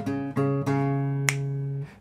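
Acoustic guitar played fingerstyle: a few single melody notes of a tune in D flat major plucked one after another, the last ringing on for over a second before it is stopped near the end, with a light click about halfway through.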